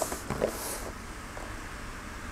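Faint rustling of a person shifting on an exercise mat in the first second, then only room tone.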